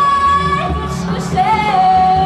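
Live band music: a woman sings a long held note, breaks off with some gliding, then holds a lower note from about halfway through, over bass and drums.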